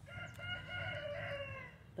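A chicken giving one long, drawn-out call that eases down in pitch near the end.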